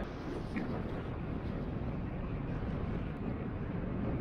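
Steady riding noise of a road bike rolling along a paved street: tyre hum and wind rushing past the microphone, even throughout.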